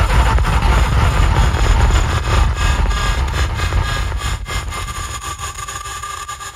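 Psytrance breakdown: a dense electronic texture over a heavy rumbling bass drone, with a steady high synth tone. The bass and overall level gradually fade away.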